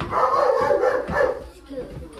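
A dog barking, a loud run lasting about a second at the start, then dying away.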